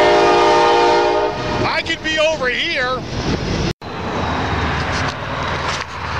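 Freight train horn sounding one steady chord of several notes, ending about a second and a half in, over the rumble of passing boxcars.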